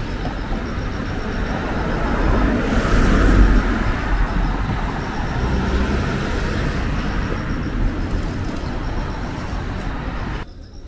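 Night-time city street traffic noise: a steady rumble and tyre hiss that swells as a car passes about three seconds in, then eases.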